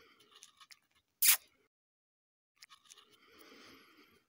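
Faint crunching and scraping on crusted snow and ice, with a few small clicks. About a second in comes one sharp, loud crack, the loudest sound here.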